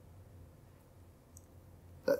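Near silence: the room tone of a small hall with a faint steady low hum, and one faint click about one and a half seconds in.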